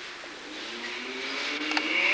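Several practitioners' voices rise together in one long, drawn-out kiai shout, as used in the Jikishinkage-ryu Hojo sword form. The shout climbs in pitch and swells steadily louder, and a short sharp click sounds near the end.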